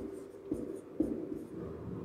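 Marker pen writing on a whiteboard: a squeaky drag of the tip with short taps as each stroke of the letters starts, about every half second.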